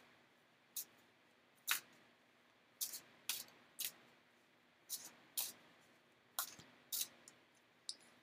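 Oracle cards being shuffled and handled by hand: a run of about nine short, crisp card snaps at uneven intervals, faint against room hiss.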